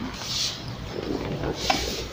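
Chairs shifting and clothing rustling as seated men push back and get up from a table, with a short knock about three-quarters of the way through.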